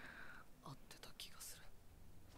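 Faint, soft-spoken dialogue from the anime's soundtrack, barely above near silence.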